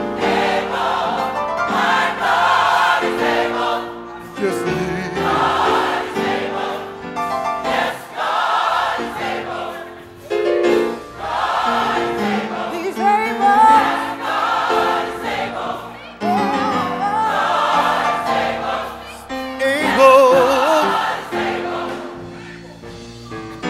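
Gospel mass choir singing in full voice, in phrases of several seconds each with short dips between them.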